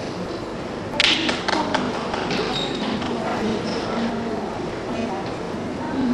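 Indistinct voices of a group talking in a large, echoing hall, with a quick cluster of sharp taps about a second in.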